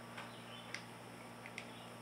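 Faint ambience: a few brief, high chirps from birds in distant woods, three or so spread through, over a low steady hum. The water-cooling reservoir gives no audible trickle or splash: it runs silent.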